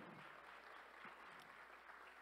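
Faint applause from a congregation, an even patter of clapping heard at a distance.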